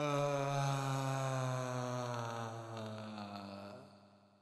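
A deep voice chanting one long held 'ahm'. It starts abruptly, its pitch sinks slowly, and it stops a little before the end, trailing off.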